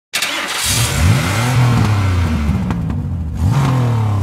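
Car engine revving twice: the pitch climbs sharply less than a second in, holds at high revs, then climbs again near the end.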